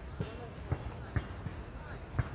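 Basketball bouncing on a hard outdoor court: four short thuds, about half a second apart.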